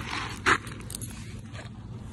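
Scraping and rustling noise with a few small ticks, and one short, sharp rush of noise about half a second in.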